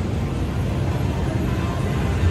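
Steady low din of a casino floor: a continuous rumble and hum of background noise with no distinct event standing out.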